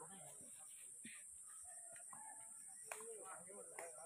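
Faint outdoor ambience of distant voices and a few short animal calls, with one sharp knock just before three seconds in.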